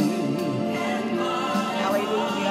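Recorded gospel worship song playing: a choir singing with vibrato over sustained accompaniment.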